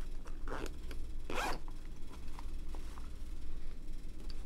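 Zipper on a fabric tripod pouch run in one quick, loud stroke about a second and a half in, with lighter fabric rustling before it and small clicks after.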